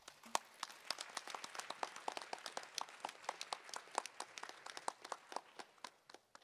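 Audience applauding in a hall, a patter of separate hand claps that thins out and stops at the end.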